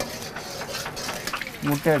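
Metal ladle stirring and scraping in an iron wok of hot oil over a gas burner: irregular small clinks over a steady hiss. A man's voice comes in near the end.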